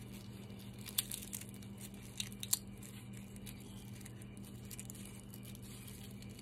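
Dry papery skin of a black garlic bulb crackling and rustling faintly as fingers peel it away, with a few sharper crackles in the first half, over a steady low hum.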